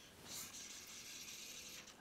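Faint hiss of a fly line travelling through the air and running out through the rod guides during an overhead cast as the line is shot.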